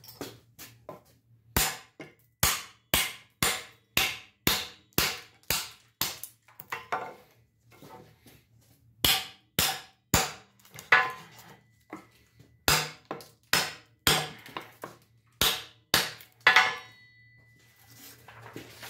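Hammer blows on the spine of a knife, driving the blade into the edge of a wooden board: a series of sharp knocks about two a second, in three runs with short pauses between. After the last blow a thin metallic ring hangs on briefly.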